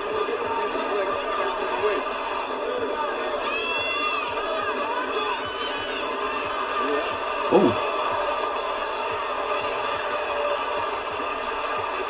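Boxing highlights audio: arena crowd noise mixed with commentators' voices and music, with a sudden loud moment about seven and a half seconds in.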